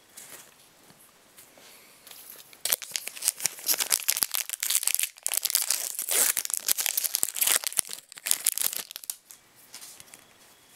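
Foil booster-pack wrapper being torn open and crinkled by hand: loud crinkling and tearing that starts about two and a half seconds in, breaks briefly around the middle, and dies away about a second before the end.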